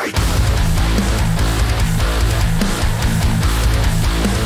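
A loud heavy-metal band mix playing back from a multitrack mixing session, with electric guitars and a heavy low end. It starts abruptly at the very beginning.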